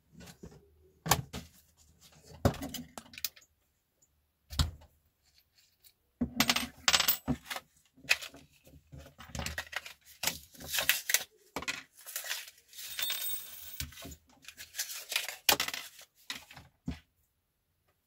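Handling noise of small tool parts: irregular clicks, clinks and rustles as hands rummage in a plastic tool case, set small metal pieces down on a wooden table and handle a card package while swapping the cutting attachment on a rotary tool. The rotary tool itself is not running.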